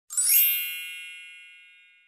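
A bright, shimmering chime sound effect: a quick upward sparkle, then many high bell-like tones ringing together and fading away over about two seconds.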